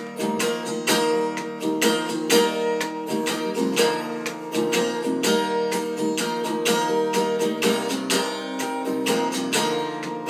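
Solo guitar strummed in a steady chord rhythm, several strokes a second.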